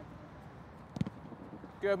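A football kicked once about a second in, a single sharp knock over steady faint background noise.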